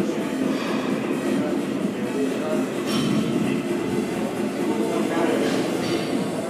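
Loud, steady echoing din of a busy gym hall: background music mixed with voices.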